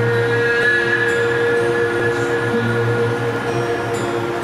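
Haegeum, the Korean two-string bowed fiddle, playing slow, long-held notes, with a steady low tone underneath.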